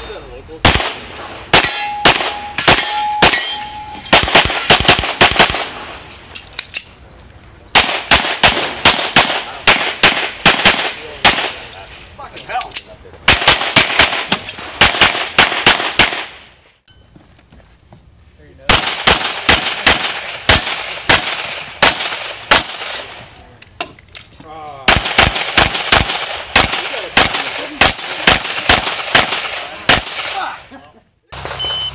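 Springfield Armory XDm semi-automatic pistol fired in fast strings of several shots a second, in bursts separated by short pauses as the shooter moves between positions. A few struck steel targets ring after some shots.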